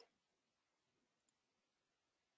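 Near silence: a faint, even hiss with no distinct sound.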